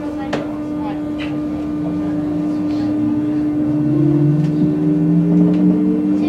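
Cabin sound of an MI84 electric train on RER A pulling into a station: a steady electrical hum with whining tones from the traction equipment that climb in pitch in the second half, getting louder, with a couple of short clicks near the start.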